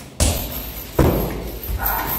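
Two low kicks landing on a hanging heavy punching bag, two thuds a little under a second apart.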